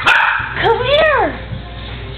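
A small dog's single short, harsh bark right at the start, then a woman's high, sing-song call of "come" to the dog.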